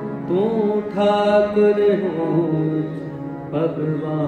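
Sikh kirtan: a male voice sings a devotional hymn over the steady reedy chords of harmoniums. A new sung phrase enters shortly after the start and another near the end.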